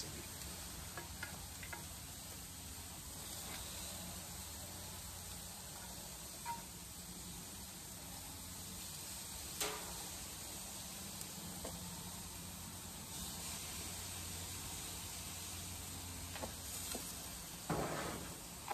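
Chicken breasts sizzling quietly on a gas grill as maple barbecue marinade is brushed onto them, with a few light taps, the sharpest about ten seconds in.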